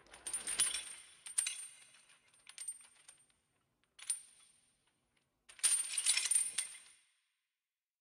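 Bright clinking and rattling after the music has ended, like small metal pieces jingling. There are two longer clusters, one at the start and one about two-thirds of the way in, with a few single clinks between them.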